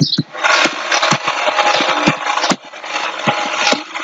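Computer keyboard typing: a quick run of key clicks over a steady hiss.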